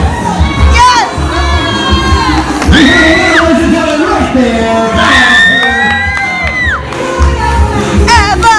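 A crowd of children shouting and cheering over loud dance music with a steady beat, with two long high-pitched shrieks: one about three seconds in, and one from about five seconds until nearly seven.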